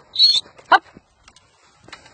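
A Staffordshire terrier giving two short high-pitched vocalisations about half a second apart, like a whine and a yip.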